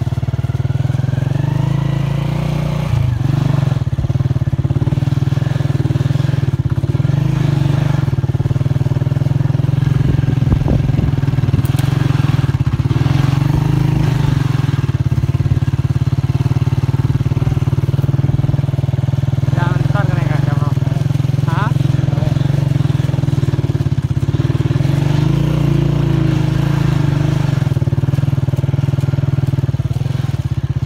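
Motorcycle engine running steadily at low speed, with people's voices over it.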